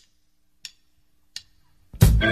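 Three faint, sharp ticks about two-thirds of a second apart, like a count-in before the song's backing track. Right at the end the music starts to come in.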